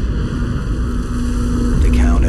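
Trailer sound design: a deep, loud rumble with a steady low tone that comes in about a third of a second in and holds.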